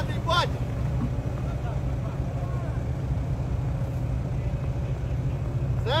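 Armoured vehicle's engine running steadily, a low pulsing drone, with a man's voice calling out briefly just after the start and again near the end.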